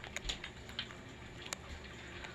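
Light, irregular clicks and ticks, a few each second, over a low background hiss; the sharpest click comes about one and a half seconds in.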